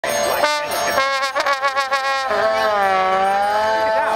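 Accordion and trombone playing together: a quickly pulsing passage, then a long held chord that bends slightly in pitch.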